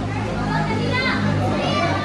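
Children's voices, high and overlapping, with background music under them.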